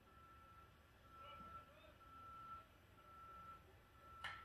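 Near silence with a faint vehicle reversing alarm: four steady high beeps, each about half a second or more, roughly one a second.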